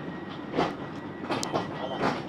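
Railway train noise: a steady rumble broken by sharp metallic clacks, one about half a second in, two close together near a second and a half, and another at the end.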